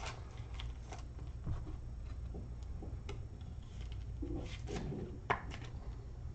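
Light clicks and ticks of a clear hard plastic card holder being handled as a trading card is fitted into it, over a steady low hum.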